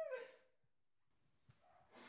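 A high-pitched whimpering cry that bends downward and trails off within the first half second, followed by near silence.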